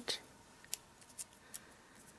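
Faint crisp ticks of paper being handled, about four in two seconds, as the release backing is peeled from foam adhesive dimensionals.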